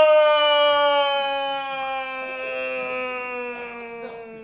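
A long, held scream sliding slowly down in pitch and fading away: a falling scream, as of a man plunging from a shattered window.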